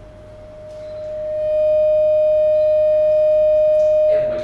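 Microphone feedback through the PA: a single steady high tone that swells over about a second and then holds loud, easing off near the end.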